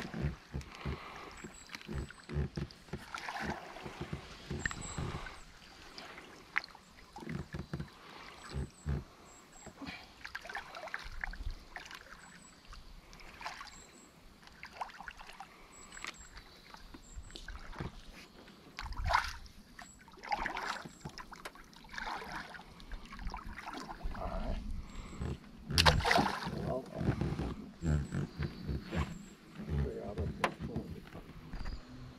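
A wooden boat paddle pushing and sloshing through a floating salvinia mat to clear open water, with irregular splashes and scattered short knocks against the boat, loudest about two-thirds of the way through.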